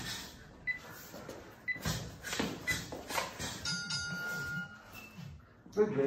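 Boxing gloves landing in a string of sharp slaps during sparring, with short squeaks from sneakers on the floor and one longer squeak about four seconds in.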